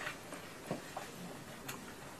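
Faint steady hiss of room tone with two or three soft clicks, about a second apart.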